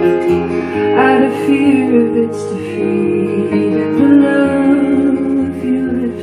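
Live solo song on a steel-string cutaway acoustic guitar, strummed steadily, with a woman singing into the microphone.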